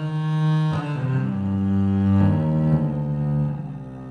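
Sampled viola da gamba, a fretted six-string bass viol with synthetic gut strings, playing long bowed notes in its low register. Two or more notes overlap, and a new note enters about every second.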